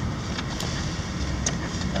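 Steady low rumble of a 2003 Ford Explorer Sport Trac's V6 and its road noise, heard from inside the cab as the truck creeps forward at low speed, with a few faint clicks.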